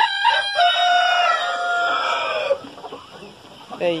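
Rhode Island Red rooster crowing once: a few short opening notes, then a long held note that falls away and stops about two and a half seconds in.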